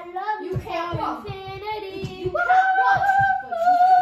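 A child singing wordless, long drawn-out notes: one lower note held for a couple of seconds, then a jump to a higher note held to the end.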